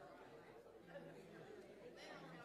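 Faint, indistinct chatter of several people talking in a large room.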